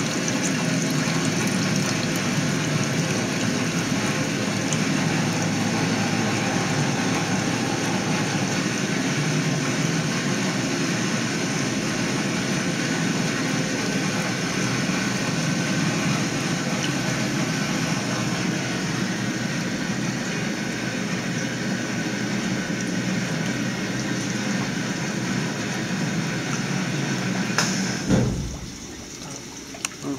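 Steady rush of water churning in a wet bench's quick dump rinse (QDR) tank during its rinse cycle. Near the end a brief louder surge, then the sound drops off sharply as the rinse finishes.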